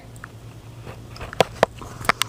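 Biting into a frozen ice cream bar: two sharp crunchy clicks about a second and a half in, over a faint steady hum.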